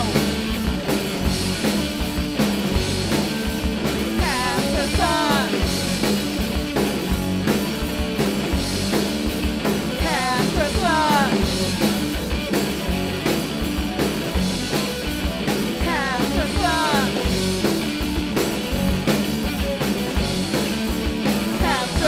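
Live rock band playing a song on electric guitar, bass guitar and drum kit, with a singer's voice sliding up and down in short phrases over it.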